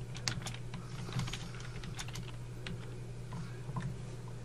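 Typing on a computer keyboard: a short run of irregularly spaced key clicks as a couple of words are typed, over a low steady hum.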